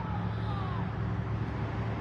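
Steady low engine drone of vehicles on the road, with faint distant voices over it.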